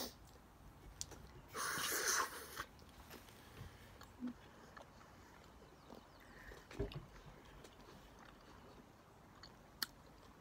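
Faint chewing of a Skittles candy, with a brief rustle between about one and a half and two and a half seconds in and a few soft clicks.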